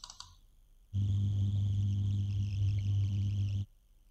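A short faint click, then a steady low electrical buzz with a thin high whine above it, starting about a second in and cutting off abruptly after under three seconds.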